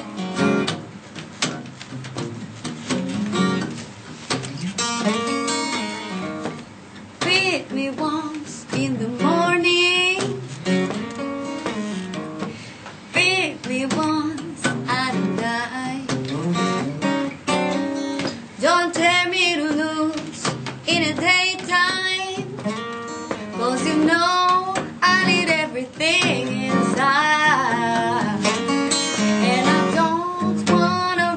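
Acoustic guitar playing a blues song, with a woman singing over it from several seconds in.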